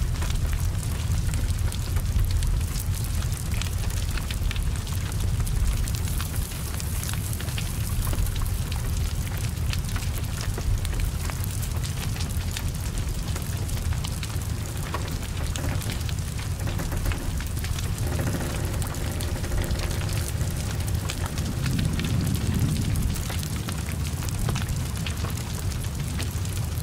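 Heavy rain falling steadily over a burning car, with a deep low rumble of the fire beneath the rain's hiss and frequent small crackles and pops.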